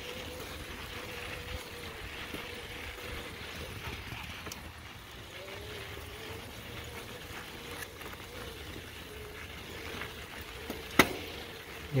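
TSDZ2 mid-drive e-bike motor whining steadily under load on a climb, its pitch wavering about halfway through, over tyre and wind noise. About a second before the end comes a single sharp clunk: the drive skipping, which the owner puts down to a worn sprag clutch (the one-way main gear bearing).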